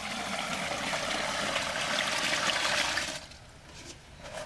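Liquid pouring in a steady stream from a tilted metal pail, stopping about three seconds in.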